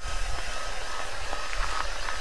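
SparkFun Heaterizer XL-3000 single-speed heat gun running, held against an iced car window: a steady rush of blown air with a thin, high motor whine and a low rumble underneath.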